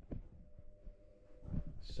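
Faint handling noise from a handheld camera being moved: soft low knocks and rustle over a faint steady hum, with a man's voice starting near the end.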